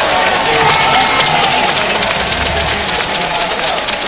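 Loud basketball-arena crowd noise, a dense din of many voices and cheering, with music playing over the arena's sound system.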